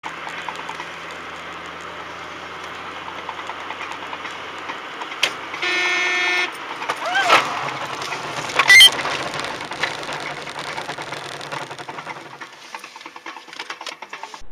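Road noise as heard from a car, with a car horn honking once for just under a second about six seconds in. Near nine seconds comes a short, sharp bang, the loudest moment.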